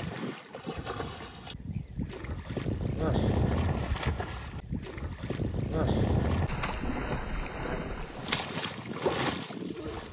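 A hooked fish splashing and thrashing at the water surface as it is played on a rod, with wind rushing over the microphone.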